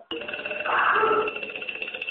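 A bell ringing continuously in a steady, high, fast trill, like an alarm bell, with a brief louder rush of noise in the middle.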